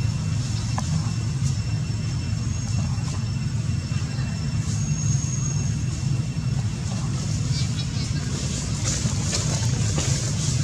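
A steady low background rumble, with a few faint high squeaks and scratchy sounds, most of them near the end.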